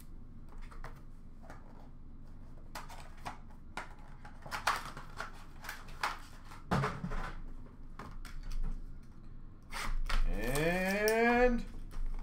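Light clicks and knocks of trading cards and a cardboard card box being handled on a glass display counter. Near the end comes a louder, drawn-out pitched sound that rises and then holds.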